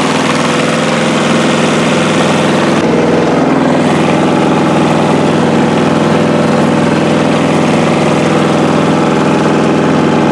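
Diesel tractor engine running steadily as the tractor is driven, its note shifting slightly about three seconds in.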